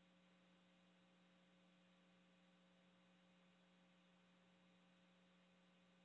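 Near silence: a faint steady hum.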